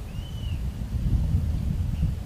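Wind buffeting the microphone, a gusty low rumble. A single short, high whistled note rises and falls about a quarter second in.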